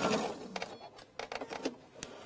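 Domestic sewing machine running to the end of a seam with an even, fast stitching rhythm, stopping about half a second in. Then a few faint clicks and rustles as the patchwork fabric is pulled away from under the needle.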